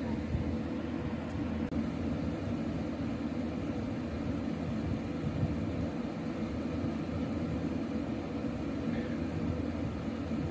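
Steady low rumble with a faint hum: background room noise, with no other event standing out.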